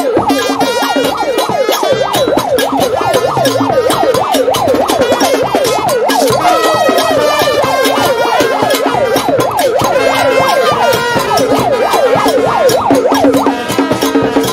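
A siren-like warble, its pitch sweeping rapidly up and down several times a second, sounds over a marching street band of drums and brass playing steadily, with a short lull a little after the middle.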